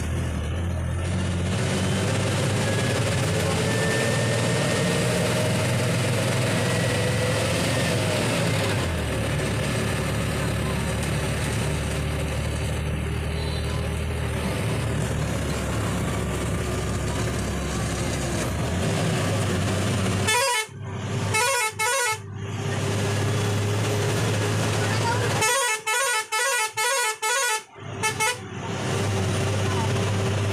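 Bus engine running under load on a mountain road, its pitch rising for several seconds and then dropping about a third of the way in, as on a gear change. Then two bursts of the bus's horn: a few short toots about two-thirds in and a longer run of rapid toots near the end.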